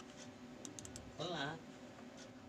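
A few faint computer mouse clicks, picking a file in a file-upload dialog and confirming it with Open. A brief voice sound follows just over a second in.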